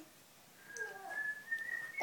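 A faint high whistle: a single thin tone that starts just under a second in and steps slightly upward in pitch until the end, with a brief faint murmur just before it.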